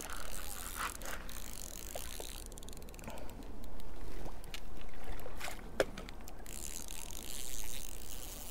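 A spinning reel ticking rapidly for a few seconds around the middle, worked against a hooked rainbow trout that is pulling hard on the line.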